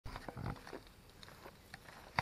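Faint rustles and a few soft knocks from a handheld camera being moved and turned around, mostly in the first second, then low hiss.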